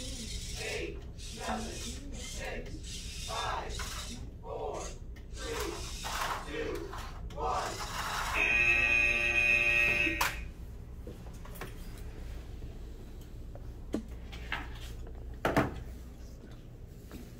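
VEX IQ match timer's end-of-match buzzer: a loud, steady electronic buzz about halfway through, lasting about two seconds, signalling that the match time has run out. A few sharp knocks follow near the end.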